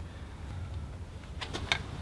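Quiet handling noise over a low steady background rumble, with a few light clicks about one and a half seconds in as the plastic e-bike battery bracket and its wooden spacer block are handled.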